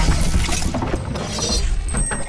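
Sound effects of an animated logo sting: a dense stream of rapid mechanical clicks and rattling.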